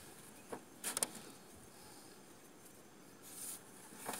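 Faint handling sounds of a cast net and its hand line being coiled and readied: a few soft clicks about half a second and a second in, and a soft rustle near the end.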